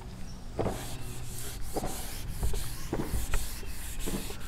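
Whiteboard eraser wiping marker off a whiteboard in repeated rubbing strokes, starting about half a second in.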